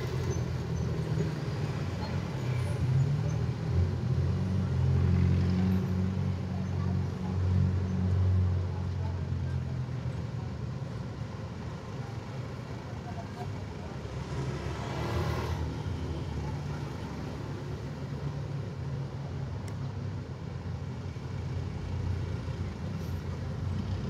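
Road traffic with vehicle engines running at a slow crawl. A low engine rumble is loudest for the first ten seconds, as if a heavy vehicle is close by, then fades to a fainter steady traffic hum.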